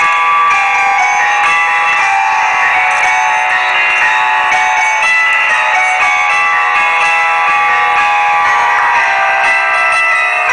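Live ensemble with guitars playing an instrumental passage of a song, with many plucked notes and no singing.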